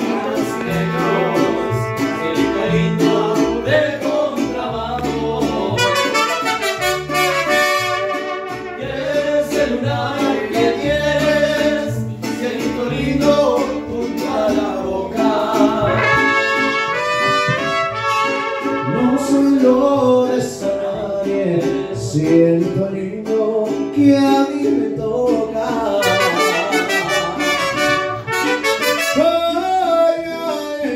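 Mariachi band playing live: trumpets carry the melody over strummed vihuela and guitar, with a plucked bass line stepping between notes underneath.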